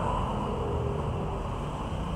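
Steady low background rumble, with a faint steady hum in the middle of it.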